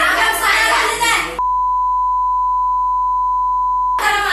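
A steady, single-pitched censor bleep that cuts in about a second and a half in and holds at one level for about two and a half seconds, masking the speech in a broadcast news clip. Voices are heard before it.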